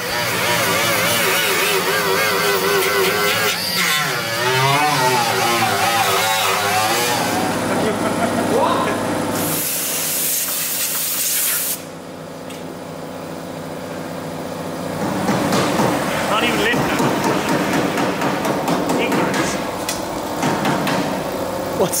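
Metalwork on a car's rear wheel arch. An angle grinder runs for the first several seconds, its pitch wavering as it is pressed into the steel. About ten seconds in there is a short burst of hiss, and the second half is filled with crackling.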